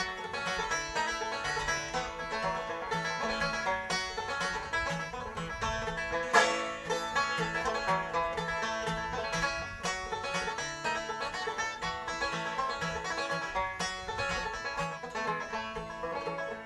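Instrumental break in a bluegrass song: banjo picking fast runs over steady acoustic guitar backing, with one louder accent about six seconds in.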